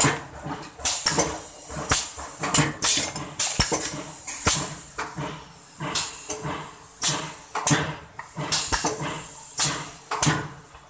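Vertical four-side-seal sachet packing machine running, its mechanism clacking in a steady rhythm of about one loud clack a second with lighter clicks between, over a constant hiss.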